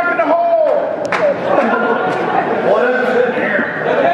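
Indistinct talking from several voices in a large hall, with no other sound standing out.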